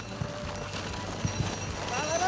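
Reindeer hooves thudding irregularly on packed snow as a team pulls a wooden sled at a trot.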